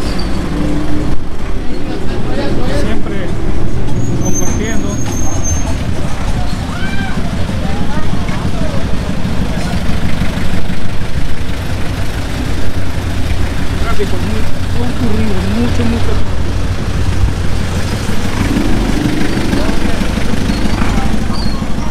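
Box truck engine running close by with a steady low rumble, the truck moving slowly through street traffic, with people's voices around it.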